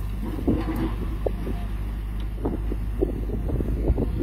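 A steady low mechanical hum, with scattered short knocks and scrapes over it.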